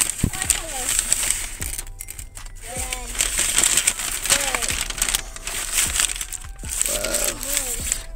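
Paper takeout bag rustling and crinkling as it is held open and shaken about, with many small crackles throughout.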